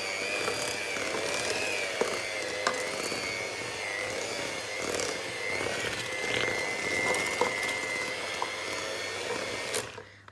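Electric hand mixer running steadily, its beaters working thick cookie dough in a stainless steel bowl; the motor's whine wavers slightly in pitch as the load changes, with a few sharp clicks of the beaters against the bowl. The mixer switches off just before the end.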